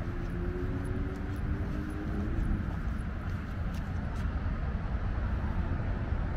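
Steady low rumble of road traffic, with a faint drone from a passing vehicle that fades out in the first couple of seconds.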